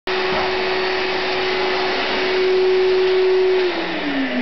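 A vacuum cleaner running with a steady whine; near the end its motor pitch starts falling as it winds down.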